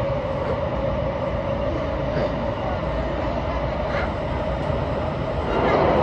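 Sotetsu 20000 series electric train running through a tunnel, heard inside the driver's cab: a steady traction-motor whine over the rumble of the wheels on the rails. It grows louder just before the end.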